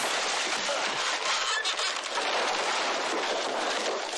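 Film soundtrack: the blast from a giant speaker being overdriven, a steady, loud rush of noise with objects clattering as they are blown across a room.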